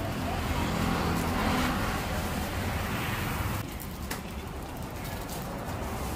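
Street traffic noise: a motor vehicle running nearby with a steady low hum, and a hiss that drops off abruptly about three and a half seconds in.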